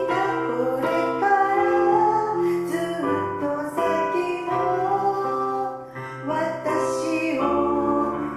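A song sung to piano accompaniment: a solo voice singing a slow melody over sustained piano chords.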